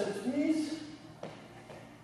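A man's voice calling a dance count, followed about a second later by a single sharp tap of a sneaker step on the hard gym floor.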